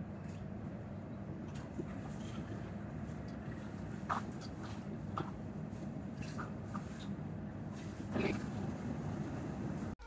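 Steady low hum and rumble inside a C751C metro train moving slowly along a station platform, with a few faint, brief high squeaks scattered through it.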